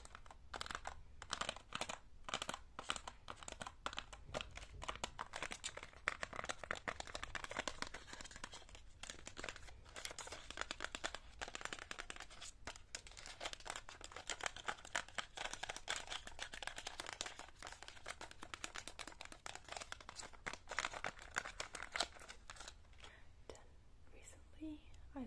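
Long fake nails tapping and scratching on a cardboard box of press-on nails with a clear plastic window, giving a dense, irregular run of clicks, scratches and crinkles with a few brief pauses.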